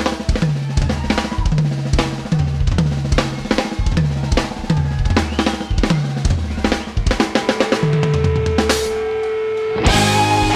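Live rock drum kit played in a steady pattern of kick, snare, tom and cymbal strokes, about two a second. Near the end a steady held tone sounds under the drums, and at the very end the full band with electric guitar comes back in.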